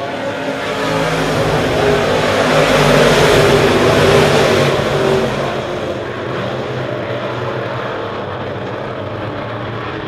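A pack of sport modified dirt-track race cars with V8 engines running on the oval. The sound grows louder to a peak about three to four seconds in as the cars come by, then eases to a steady lower level.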